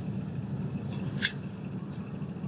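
Faint, steady low hum of background recording noise, with one short, sharp click a little over a second in.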